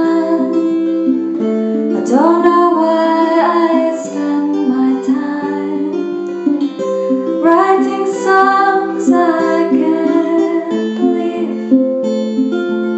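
Tenor guitar played in a steady flowing pattern of picked notes, with a woman singing over it in two phrases, starting about two seconds and about seven and a half seconds in.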